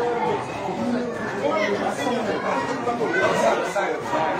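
Several people talking at once: overlapping conversation in a crowded room.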